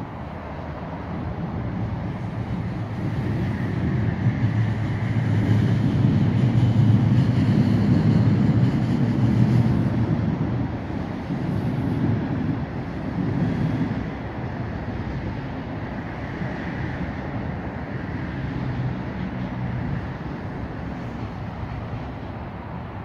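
Low rumble of a passing vehicle, swelling to a peak about six to ten seconds in and fading by about fourteen seconds, then a steadier, lower rumble of traffic.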